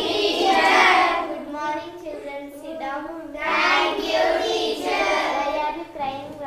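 A class of children's voices chanting in unison in a drawn-out, sing-song way, in two long phrases: the chorused classroom reply to a greeting.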